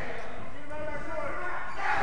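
Voices shouting in a wrestling-show crowd, with one drawn-out yell near the middle.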